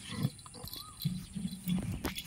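Young water buffalo bull giving low grunts while kneeling and butting the dry ground with its head, with a sharp thump just after the start.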